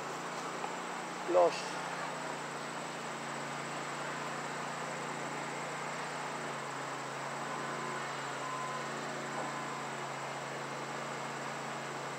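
Steady outdoor background noise with a constant high-pitched insect drone, such as crickets, running on unchanged.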